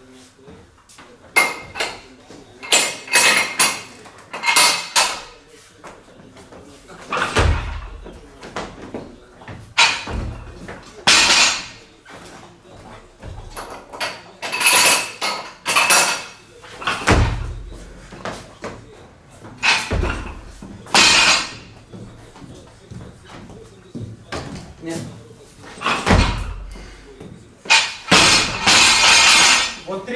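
Barbell loaded with bumper plates thudding down onto a lifting platform about five times between snatch reps, mixed with several bursts of metallic clanking and ringing from steel weight plates and bars being handled.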